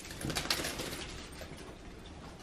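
Soft rustling of sweatpants fabric and phone-camera handling noise while stepping on a hardwood floor, strongest in the first half-second or so and then fading to a low hush.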